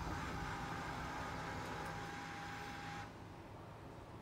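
A steady high tone over a hiss from the school bus as its red warning lights are switched on, cutting off suddenly about three seconds in, leaving a low steady hum.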